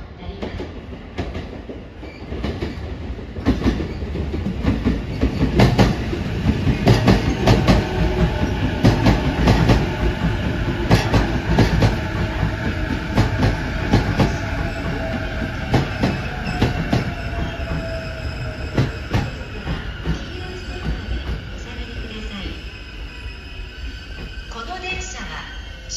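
A JR East E233 series 0 electric train pulling into a station: the wheels rumble and click over the rail joints and points, loudest as the cars pass close by in the middle, then easing as it slows. A faint whine falls in pitch as it slows, with a high steady squeal under it.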